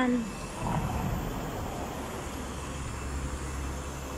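Low, steady rumble of a car engine running, growing a little stronger in the second half.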